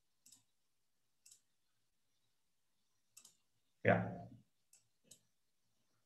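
A handful of faint, sharp computer mouse clicks, spaced irregularly over a few seconds.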